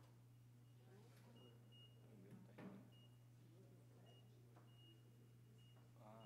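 Near silence: room tone with a steady low hum and faint short high beeps every second or so, plus a brief soft noise about two and a half seconds in.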